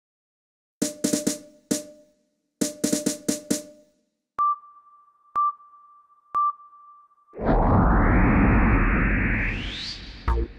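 Cartoon rocket-launch sound effects: two short drum fills, then three countdown beeps a second apart, then a loud rocket-blast rumble from about seven seconds in that rises into a whoosh as the rocket lifts off.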